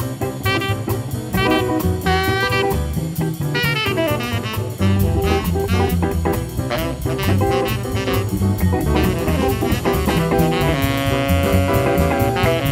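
Live jazz band playing an instrumental passage: a saxophone over double bass, keys and a drum kit keeping a steady swing beat on the cymbals. Near the end the saxophone holds one long note.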